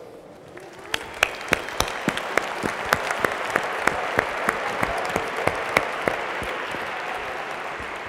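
Audience applauding, building up within the first second and thinning out near the end, with a few sharp claps close by standing out from the rest.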